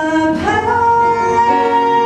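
A woman singing a musical-theatre ballad into a microphone, with piano accompaniment. She holds one long note from about half a second in.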